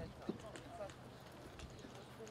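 Faint, indistinct voices in the open air, with one sharp knock about a quarter second in.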